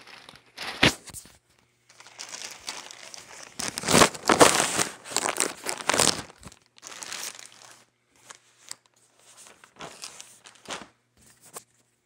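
Plastic mailer bag crinkling and tearing as it is handled and pulled open, in irregular bursts: a sharp crackle about a second in, the loudest stretch around the middle, then scattered shorter rustles.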